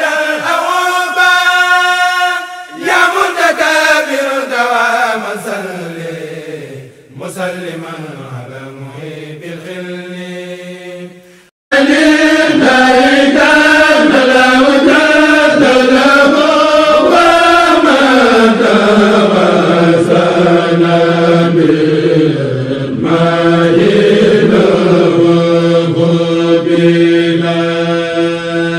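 Male voice chanting an Arabic devotional poem, a Mouride khassida, in long held notes that glide up and down. The chant fades and cuts off abruptly about twelve seconds in, and a second loud chant starts straight after.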